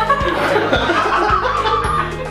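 Laughter and chuckling over background music with a steady beat of about two beats a second.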